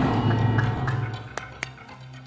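Game-show music sting: a loud low hit that fades away over about a second and a half, followed by a couple of light ticks. It marks the answer being locked in before the reveal.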